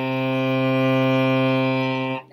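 Cello playing one long, steady bowed note: C on the G string, stopped with the fourth finger, the fourth note of a G major scale.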